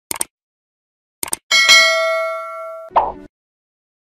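Subscribe-button animation sound effects: two quick pairs of mouse-style clicks, then a bright notification-bell ding that rings and fades for over a second. A short, duller hit follows near the end.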